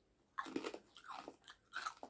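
Close-up chewing of a mouthful of crunchy food, a run of irregular crunches and wet mouth sounds starting about half a second in.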